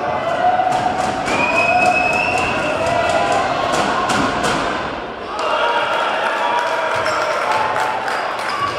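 Basketball game ambience in a gym: many overlapping voices of players and crowd, with a ball bouncing and thudding on the hardwood court, the strikes clustered in the first half around the shot and rebound.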